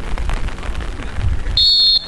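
Wind rumbling on the camera microphone, then about one and a half seconds in a referee's whistle blows one long, shrill, steady blast.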